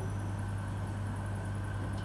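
Steady low electrical hum from an amplified sound system, under faint room noise.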